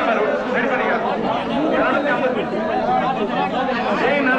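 Crowd of men talking and calling out all at once: many overlapping voices with no single speaker standing out.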